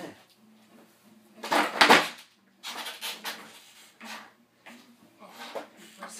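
Skateboard ollie on a carpeted floor: the tail snapping down and the board coming back down, a loud clatter about a second and a half in, followed by several softer knocks of the board and wheels.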